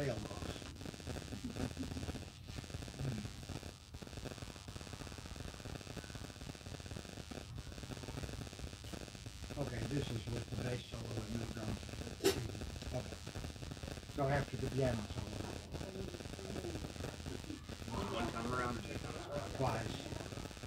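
Faint, indistinct talking by a few people, coming and going, over a steady background hiss, with one sharp click about twelve seconds in. No instruments are playing.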